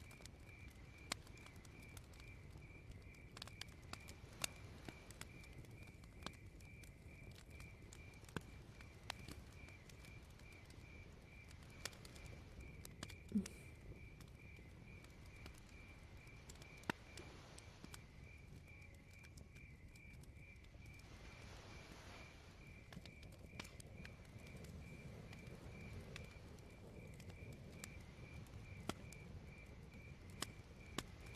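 Faint night ambience: crickets chirping in a steady, evenly pulsed trill, with scattered sharp pops and crackles of a fire and a low rumble underneath.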